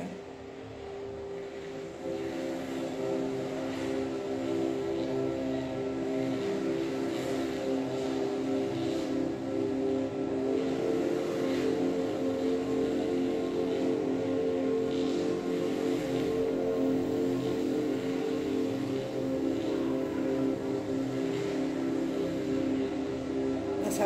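Soft ambient meditation music: sustained, layered drone tones that hold steady, with a higher tone joining about halfway through.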